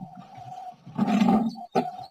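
Recorded phone-call audio between two speakers' lines: faint line hiss with a thin steady tone, then about a second in a short, low, rough voice sound from the line, such as a grunt or clipped murmur.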